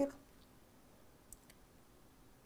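A man's voice trails off at the very start, then near silence broken by two faint, short clicks about a second and a half in.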